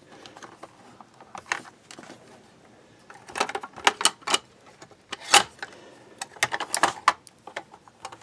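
Handling clatter from a large high-voltage capacitor pack being worked loose and lifted out of an opened defibrillator's plastic casing: scattered sharp clicks and knocks of plastic and parts, sparse at first and denser in the second half, the loudest about five seconds in.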